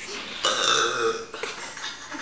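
A person belching once, loud and drawn out for about a second, starting about half a second in.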